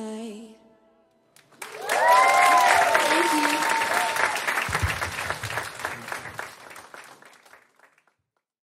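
The last sung note with keyboard backing fades out, and after about a second's pause the audience breaks into applause with cheering, which dies away gradually toward the end.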